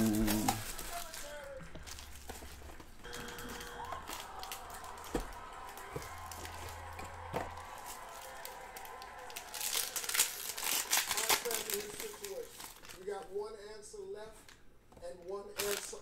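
Plastic shrink wrap being torn and crinkled off a box of trading cards, a dense run of fine crackles that is busiest and loudest about ten seconds in.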